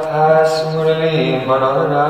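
A man's voice chanting a devotional mantra in long held notes, the pitch shifting about halfway through.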